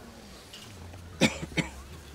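A person in the crowd coughing twice in quick succession, a little over a second in.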